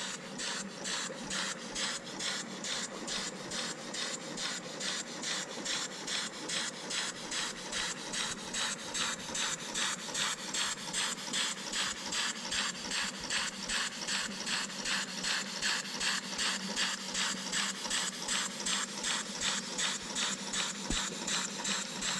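Small German double-acting slide-valve steam engine running on wet, low-pressure steam from a wallpaper-stripper boiler. Its exhaust chuffs steadily, about three hissing beats a second.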